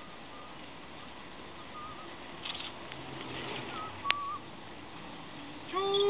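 A few short, faint, wavering whistle notes over steady background noise, with one sharp click about four seconds in. At the very end a voice starts a 'chou, chou' chant.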